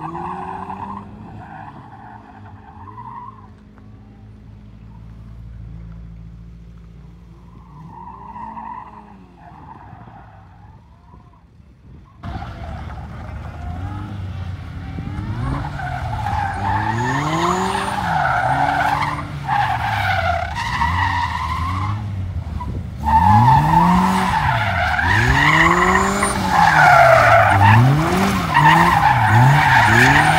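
RAW Striker kit car's engine revving up and dropping back again and again as it is driven hard through tight turns, with tyres skidding on the loose, dusty surface. Faint and distant at first, it gets much louder about twelve seconds in and louder again about two thirds of the way through as the car comes back closer.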